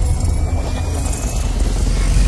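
Cinematic intro sound effect: a steady deep rumble with a faint high tone slowly rising through it, between whooshes.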